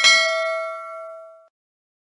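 A single bell ding sound effect for clicking a notification bell icon. It rings out and fades away over about a second and a half.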